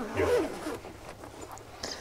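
Zipper of a hard-shell camera backpack being pulled open around the lid, with a brief murmur of a woman's voice near the start.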